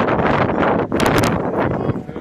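Wind blowing across the microphone, a loud, steady rush, with a few sharp ticks about a second in.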